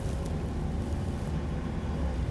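Steady low rumble of a car's road and engine noise heard from inside the cabin while driving.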